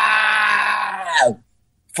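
A man's long, strained held note, sung without accompaniment, that slides down in pitch and stops about a second and a half in, followed by a short dead silence.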